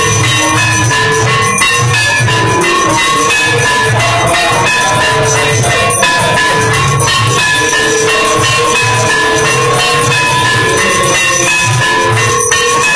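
Temple aarti music: bells ringing continuously over drumming and rattling percussion.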